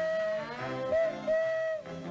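Dinner horn blown in a short phrase of long held notes: the call to come and eat.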